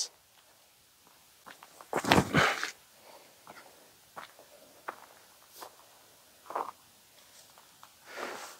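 Feet scuffing on a tee pad during a disc golf throw: one short scuffle about two seconds in, then faint scattered rustles and ticks.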